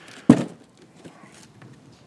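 A single sharp thud about a third of a second in, as a large cardboard box is set down, followed by faint handling noises.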